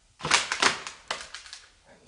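Handling noise from a handheld camera: a quick run of clattering knocks and rubbing as it is swung about, loudest in the first half, with a few further clicks after.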